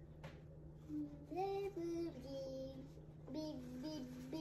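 A young girl singing a wordless tune in two short phrases, holding notes that step up and down. A single sharp click sounds about a quarter second in.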